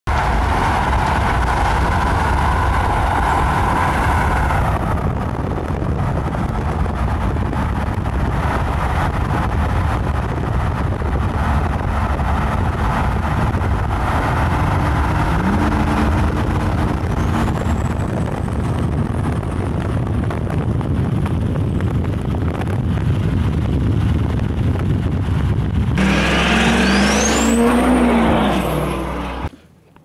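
Duramax diesel pickup under way, heard from the cab: steady engine and road noise throughout. Near the end the engine pulls harder and a high whistle climbs steeply in pitch, then the sound cuts off abruptly.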